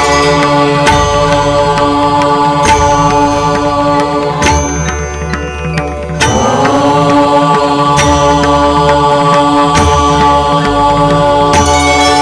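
Instrumental interlude of Hindu devotional music: sustained, drone-like tones over a steady beat. It thins out briefly in the middle, then comes back with a rising slide.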